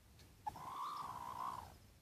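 A chicken gives one drawn-out, slightly wavering call lasting about a second, starting about half a second in with a short click.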